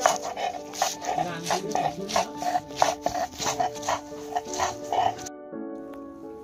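A hand-held stone muller grinding garlic cloves into paste on a wet slab: rhythmic scraping, crushing strokes about three a second, which stop about five seconds in. Background music plays throughout.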